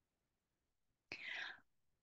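Near silence, broken about halfway through by one short, soft breath, a quick intake of air before speaking.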